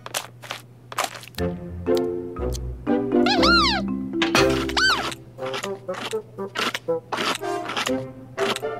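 Cartoon underscore music with short, detached notes, and a cartoon creature's voice making two rising-and-falling calls, about three and about four and a half seconds in.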